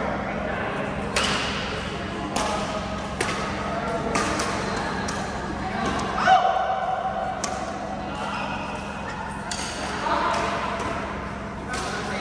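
Badminton rally: rackets striking the shuttlecock in a string of sharp hits roughly a second apart, with voices in the background.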